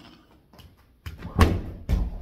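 Thuds of a gymnast's round-off twist: impacts begin about a second in, the loudest comes halfway through, and another heavy thud lands near the end.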